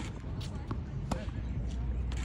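Tennis ball struck by racket strings and bouncing on a hard court during a short rally: a few sharp pops, the loudest near the start and about a second in.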